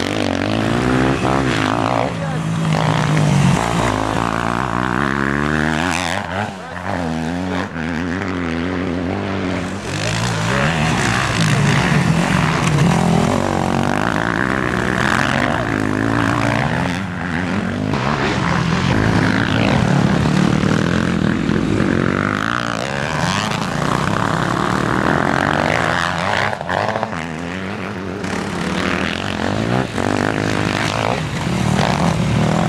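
Motocross dirt bike engines racing on a snow track, several machines at once. They rev up and drop back over and over through corners and gear changes, with the pitch rising and falling as bikes pass.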